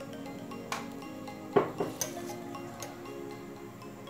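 A metal utensil clinking and scraping against a pan while stirring chicken in a cream sauce: several sharp clinks, the loudest about a second and a half in, over steady background music.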